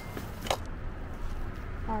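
Low, steady outdoor background rumble with one sharp click about half a second in; a woman starts speaking near the end.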